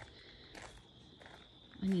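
Soft footsteps on a gravel driveway, a few faint crunches, over a steady high-pitched whine in the background.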